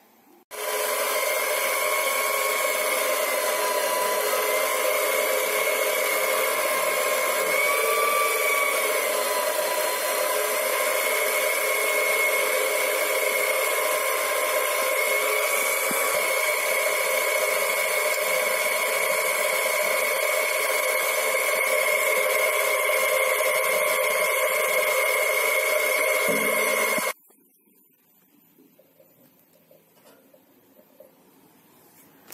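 Small benchtop metal lathe running while a drill bit in the tailstock chuck bores lengthwise into a wooden dowel. A steady motor whine that wavers in pitch a couple of times as the bit cuts, starting about half a second in and cutting off suddenly about three seconds before the end.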